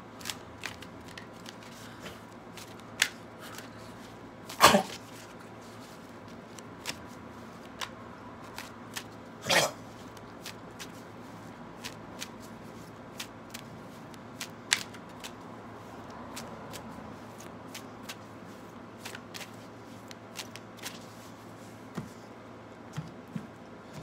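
A deck of tarot cards being shuffled by hand: scattered soft clicks and slaps of the cards, with two louder, longer shuffles about five and ten seconds in.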